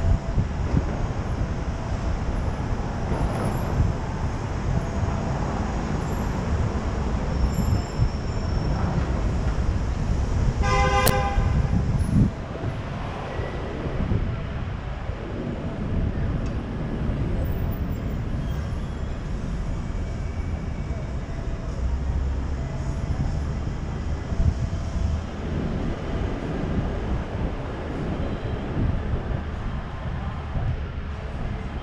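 City street traffic heard from a moving car: a steady low rumble of engines and tyres, louder for the first twelve seconds and then dropping suddenly. A short car-horn toot sounds about eleven seconds in.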